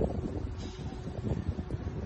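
Wind buffeting the microphone, with a faint steady electric motor hum starting about half a second in: the power-adjusted driver's seat of the DS X E-Tense sliding forward.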